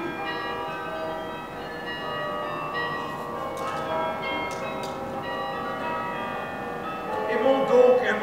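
Bells ringing: several bells strike one after another and ring on together in long, overlapping tones. Near the end a man's voice rises loudly over them.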